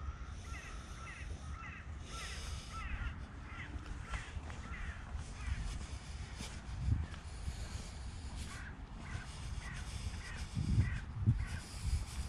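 A flock of crows calling over and over, many short caws overlapping through the fog. Closer by there is rustling from the walk and a few dull thumps near the microphone, loudest near the end.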